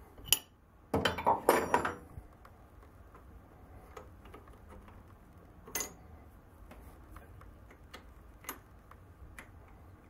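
A steel wrench clinks off a Logan lathe's tailstock clamp nut, then clatters metal on metal for about a second as it is set down. After that come scattered light metal ticks and one ringing clink near six seconds as the tailstock is handled.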